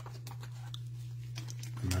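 Light clicks and rustles of trading cards and clear plastic card holders handled by nitrile-gloved hands, over a steady low hum.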